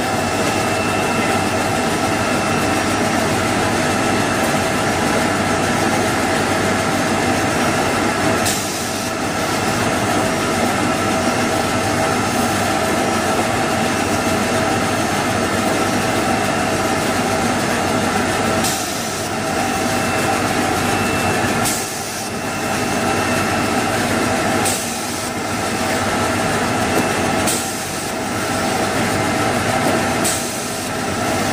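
Automatic toilet-paper roll cutting machine running steadily, a loud machine noise with a constant whine made of several steady tones. Several times, about every three seconds in the second half, the sound briefly dips with a short sharp sound.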